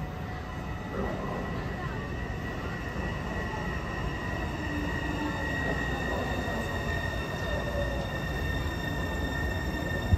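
A Taipei Metro C301 train approaching through the tunnel into the station: a low rumble that slowly grows louder, with a steady high-pitched wheel squeal from about a second in.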